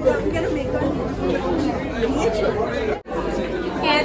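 Many people talking at once in a crowded hall: overlapping, indistinct chatter of party guests, broken by a brief sudden dropout about three seconds in.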